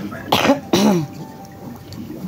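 A woman clearing her throat with a couple of short, harsh coughs about half a second in.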